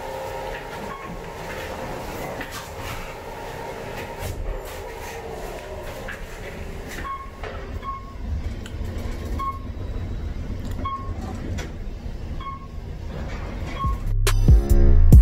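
Elevator cab running: a steady low rumble with clicks and rattles, growing heavier in the second half, where short high beeps repeat about every second or so.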